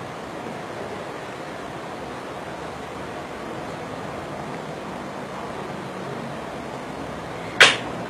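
Steady background hiss, then a single sharp crack, like a clap or slap, near the end.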